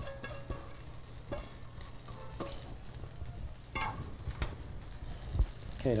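Sliced vegetables being tipped and scraped from a stainless steel mixing bowl into a glass bowl, with scattered light clinks and rustles over a steady low hum.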